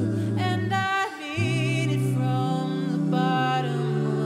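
An a cappella vocal group singing held chords, unaccompanied, over a low sung bass line that steps between sustained notes. There is a brief break in the chord a little after the first second.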